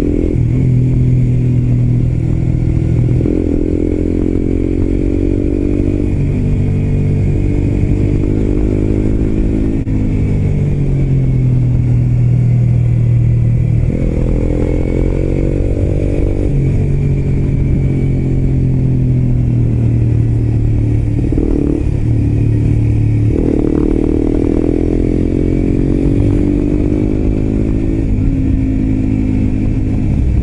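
Suzuki GSX-R125's single-cylinder engine, fitted with an aftermarket muffler, heard from the rider's seat while riding. The revs climb in each gear and drop sharply at the gear changes, several times over.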